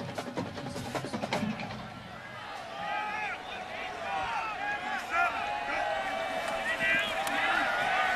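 Stadium crowd at a college football game, with drum and wood-block-like strokes from the band. A few sharp clicks come in the first second and a half, then many voices shout and yell, growing louder toward the end.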